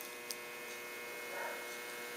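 Steady electrical hum: several faint tones held level over a low haze, with one small click a moment after the start.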